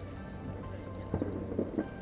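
Soft background music playing steadily, with a few light knocks about a second in and near the end.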